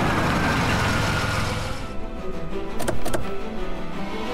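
Background music with a car engine running as an SUV pulls up and stops, then two sharp clicks close together a little under three seconds in as its doors open.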